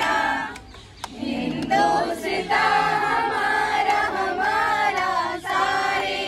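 A group of young people, mostly women, singing together in unison. They start about a second in and hold long notes, with a short break near the end before singing on.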